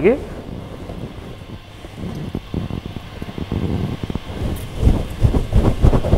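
Wind buffeting an outdoor microphone: irregular low rumbling gusts that build from about two seconds in and are strongest near the end. The lime being squeezed into the bowl is not clearly heard over it.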